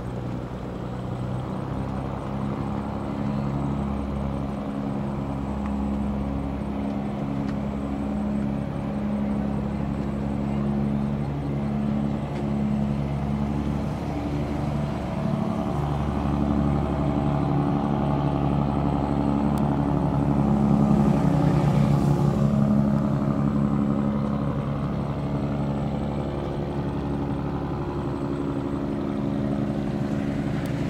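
Loaded cargo barge's engine running at full throttle, a steady low drone of several tones that grows loudest a little past the middle and then eases off slightly.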